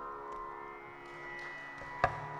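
Carnatic concert music, quiet and steady: drone and sustained held notes with the drums silent for a moment.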